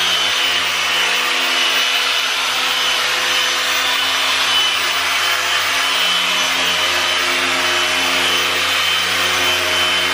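Electric orbital polisher running steadily at speed five to six, its foam pad rubbing polish over car paint.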